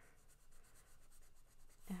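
Pencil sketching on paper: faint, quick repeated strokes.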